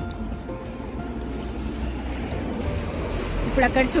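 Background music with soft held notes over a low rumble; a woman starts speaking near the end.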